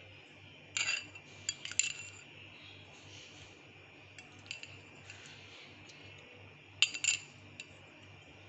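A metal fork clinking against glass while mango cubes are lifted from a glass bowl and set on top of shakes in stemmed glasses. There are a few sharp clinks about a second in, faint taps in the middle and another pair of clinks near the end.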